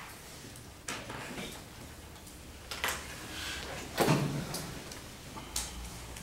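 Marker writing on a whiteboard: a handful of short scratchy strokes and taps, the loudest about four seconds in.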